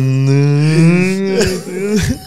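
A man's voice holding one long, low vowel at a nearly steady pitch for about a second and a half, then trailing off.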